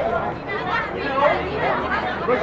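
Several voices talking and calling out over one another: busy crowd chatter.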